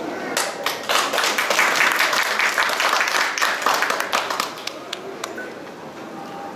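Small audience applauding after a live chamber-music piece: the clapping comes in about half a second in, stays full for a few seconds and thins out after about four and a half seconds.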